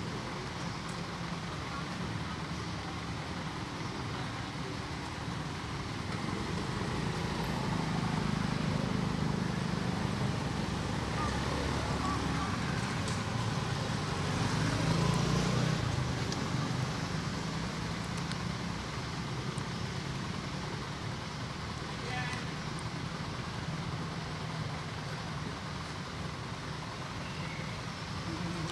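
Steady outdoor background noise with a low rumble that swells between about six and sixteen seconds in, then eases off.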